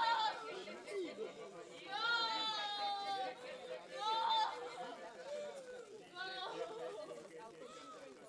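A person's high-pitched wailing cries, four drawn-out cries that often fall in pitch, over low murmuring voices.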